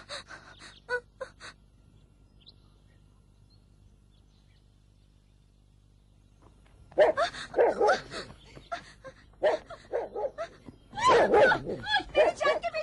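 A dog barking in several loud bouts through the second half, after a few quiet seconds.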